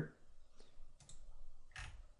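A few faint computer mouse clicks, the loudest near the end.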